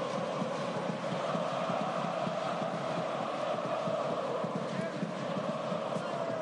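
Steady crowd noise from spectators at a water polo match, with no clear voices standing out.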